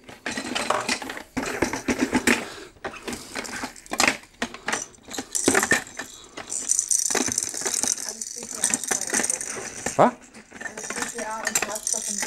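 Plastic baby toys (teethers and rattles) clattering and clinking against a glass jar as they are dropped and packed into it: a run of sharp clicks and knocks, with a denser rattling through the middle stretch.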